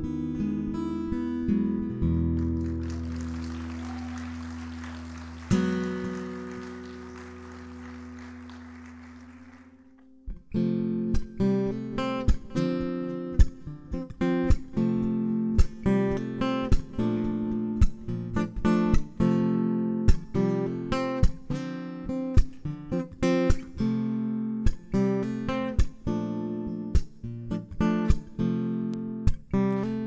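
Acoustic guitar played alone: a few chords struck and left to ring, fading away over the first ten seconds. Then a new steady rhythmic strummed pattern starts about ten seconds in, the introduction to the next song.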